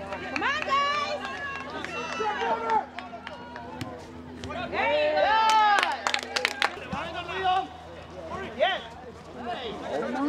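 Several people shouting and calling out at a soccer match, rising to loud excited yelling about five seconds in, with a quick run of sharp clicks around the same moment.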